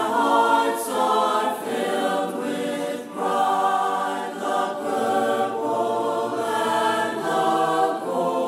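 Background music: voices singing in choir style, holding sustained chords that change about every second.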